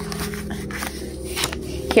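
Faint rustling and handling of a paper card envelope, over a steady low hum.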